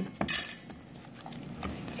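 Brussels sprouts tossed by hand in a stainless steel mixing bowl, knocking and rattling against the metal: a sharp knock just after the start, then quieter shuffling.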